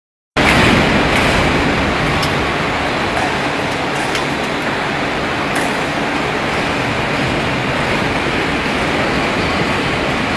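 Hydraulic injection molding machine running with a loud, steady mechanical noise, and a few light clicks.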